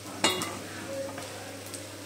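Leftover-rice and gram-flour pakoras deep-frying in hot oil in a wok, the oil sizzling steadily. One sharp knock comes about a quarter second in.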